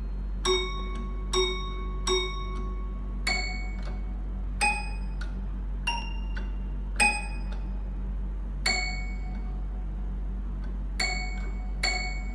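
Toy piano played one note at a time, each note a short ringing ding. The playing is slow and halting, about one note a second with a longer pause near the end: a beginner picking out a melody from sheet music.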